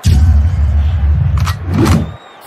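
A loud low rumble that starts abruptly and cuts off abruptly, with two brief knocks near the end.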